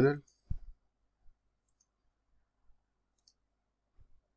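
A soft low thump about half a second in, then a few faint, widely spaced computer mouse clicks over near silence.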